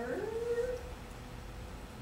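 A woman's drawn-out hesitation sound, rising in pitch and then held for about a second, followed by a pause with only a faint low hum.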